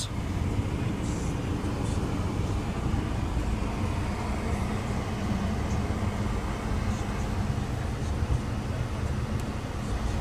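Steady low hum of a Volvo V60 D5's 2.4-litre five-cylinder diesel idling, heard from inside the cabin.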